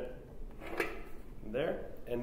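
Light handling noise of hard plastic parts, with one clear knock a little under a second in, as a reflector dish assembly is turned over and set against a plastic radome.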